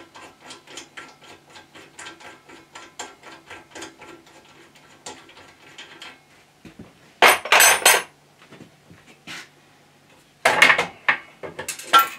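A 14 mm spanner working a nut on the cast-iron headstock of a lathe: a run of quick, light metallic clicks, about five a second, for the first half. This is followed by two loud metal clatters, one about seven seconds in and one near the end.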